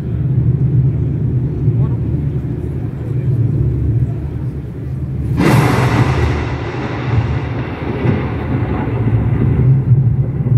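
A deep, steady low rumble from an arena sound system as the concert's opening soundscape begins. About five seconds in, a sudden loud burst of noise comes in and fades away over the next few seconds.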